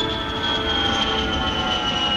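A jet airliner flyby sound effect: an engine whine of several held tones that slowly fall in pitch over a steady rush.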